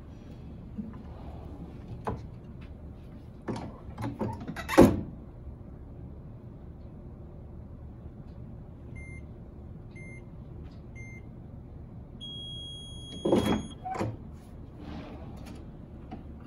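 Fusion heat transfer press being worked: several knocks and one loud clunk of the press mechanism in the first five seconds. Then the timer gives three short beeps about a second apart and a longer beep, and the press is released with a couple more clunks.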